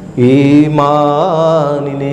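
A man chanting a line of Old Kannada verse in a slow, melodic recitation, holding long notes with a wavering turn about a second in.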